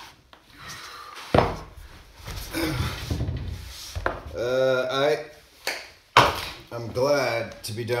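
Two sharp knocks on a wooden pine floor, a little over a second in and again about six seconds in, with rustling as a man in hard-shell knee pads moves and lies down on it. Between the knocks he lets out a long, drawn-out groan, tired from kneeling; a man's voice begins near the end.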